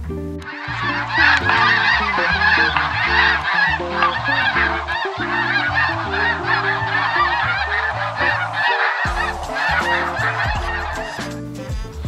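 A huge flock of snow geese calling all at once, a dense, unbroken clamour of overlapping honks that cuts off about a second before the end.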